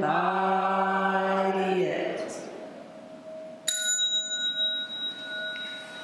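Voices chanting on one held pitch, ending about two seconds in; then a small bell is struck once and rings on with a high, clear tone.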